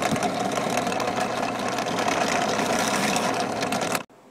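Bench drill press running steadily, its 3/16-inch bit boring through a plastic knife sheath. The sound cuts off abruptly at the end.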